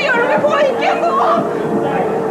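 Several voices talking over one another in alarm, with a high-pitched cry at the start.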